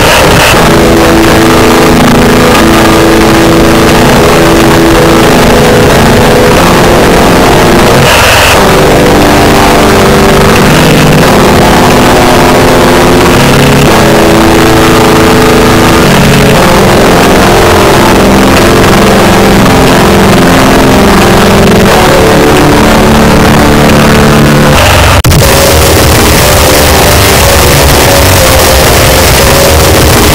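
Raw black metal: heavily distorted guitars and fast drums in a dense, noisy, lo-fi mix, the chords shifting every second or two. About 25 seconds in, one track cuts off abruptly and the next begins.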